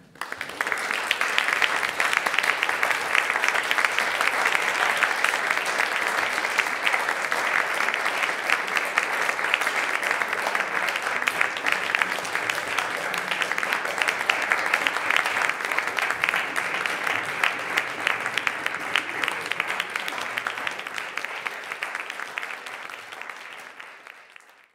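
Audience applauding, starting suddenly and fading out near the end.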